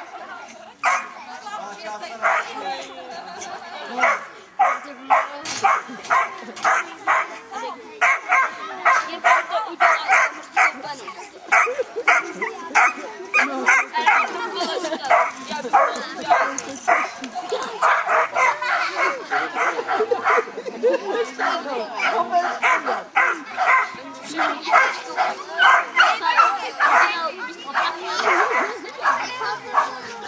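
A dog barking over and over in short, loud barks, about two or three a second, almost without a break.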